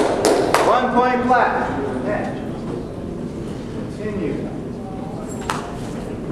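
A voice in a large hall, heard briefly in the first second and a half, with a few sharp knocks in the first half-second and one more near the end.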